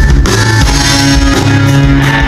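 Live rock band starting a song: electric guitar over bass and drum kit, loud and steady.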